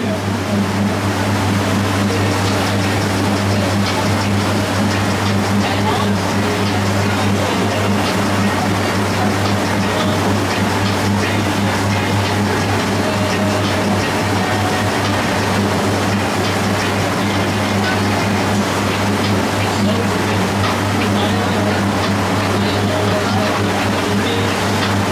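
Boat engine droning steadily at cruising speed, one unchanging low hum under a constant hiss of water and wind.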